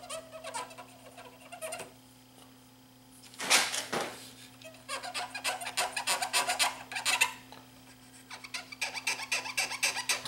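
Cotton swab scrubbing back and forth across the tape head of a Sansui SC3300 cassette deck, cleaning off dirt. Short rubbing strokes come in runs with pauses between, busiest in the second half.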